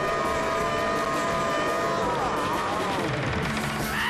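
Two cartoon characters screaming in long, held cries over the rushing noise of a roller coaster ride. The screams bend down in pitch and trail off about two seconds in, and low music comes in near the end.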